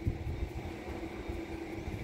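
Low, uneven rumble of wind buffeting a phone's microphone outdoors, with a faint steady hum beneath it.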